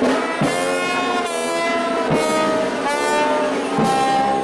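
Brass band playing held chords that change every second or so, with three sharp percussive hits.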